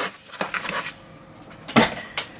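Handling noise as hard plastic toy packaging is moved about on the table: a light click, some scattered clatter, then one sharp knock near the end as something is set down.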